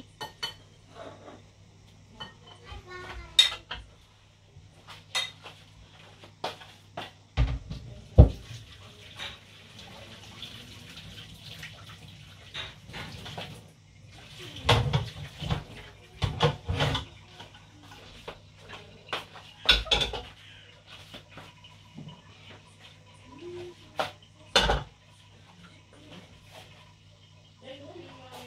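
Dishes and cutlery clattering as they are handled at a kitchen sink: scattered clinks and knocks, with several sharp, louder knocks spread through, over a steady low hum.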